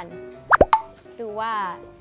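A single quick plop about half a second in: a sharp pop whose pitch drops fast, over light background music.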